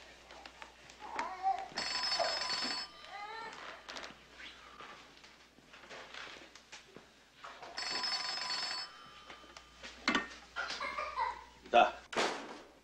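An old-fashioned telephone bell rings twice, each ring lasting about a second, roughly six seconds apart. A sharp knock comes just before the end.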